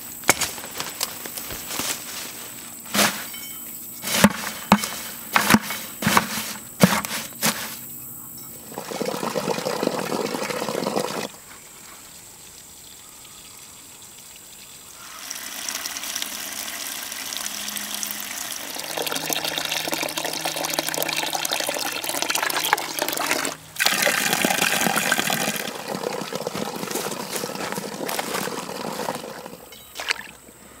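A run of sharp snaps and knocks for the first eight seconds. Then water is poured into a plastic bucket packed with pokeweed and other weeds in several long pours with short pauses, filling it to steep into weed tea.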